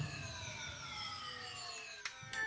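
A synthesized TV-ident sound effect: a stack of tones gliding slowly down in pitch and fading away.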